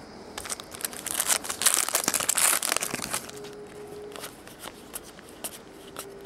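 Crinkling and tearing of a trading card pack's wrapper as it is ripped open, densest from about one to three seconds in, then lighter crackles and clicks as the cards are handled.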